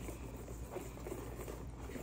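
Wire whisk stirring a thick, oily mix of coconut oil, maple syrup and spice powder in a stainless steel bowl: faint, light ticking and scraping of the wires against the bowl.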